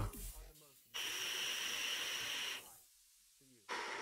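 A drag on a nicotine vape: a steady airy hiss through the device, starting about a second in and lasting under two seconds, followed near the end by a short breathy sound.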